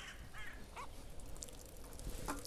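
Two faint, short animal calls about half a second apart.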